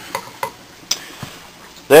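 A utensil tapping and scraping against a frying pan as scrambled egg is stirred: four or so separate clicks.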